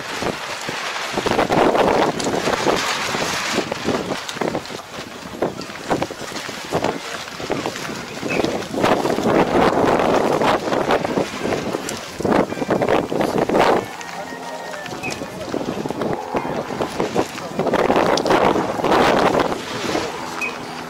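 Wind buffeting the microphone in repeated loud gusts, with people's voices in the background.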